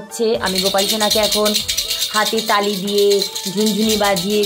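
A plastic toy ball rattle shaken quickly, with a fast continuous rattling that starts about a third of a second in.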